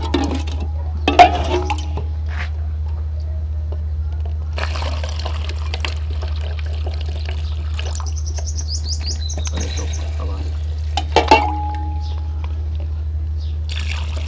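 Fruit sherbet poured from a steel mug through a plastic funnel into a plastic bottle, a splashing pour lasting a few seconds. Metal knocks with a brief ring, from the mug against the steel pot, come about a second in and again near the end, over a steady low hum.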